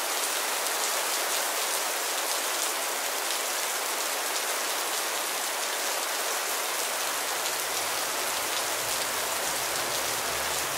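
Heavy rain pouring down onto a lake and lawn: a dense, steady hiss of falling rain with many individual drop hits in it.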